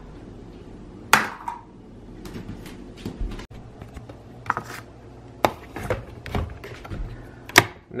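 A series of sharp plastic clicks and knocks as a coffee pod and its black plastic pod holder are handled and fitted into a Hamilton Beach FlexBrew coffee maker. The loudest clicks come about a second in and near the end, over a faint steady low hum.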